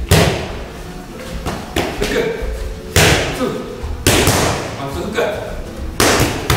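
Punches landing on boxing focus mitts: several sharp smacks at uneven intervals, the loudest right at the start and about three and four seconds in.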